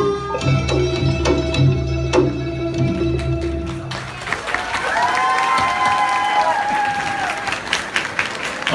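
Khmer folk dance music with a pulsing bass beat and held melodic tones, cutting off about four seconds in. Audience applause and cheering follow, with a drawn-out cheer rising and falling in the middle of the applause.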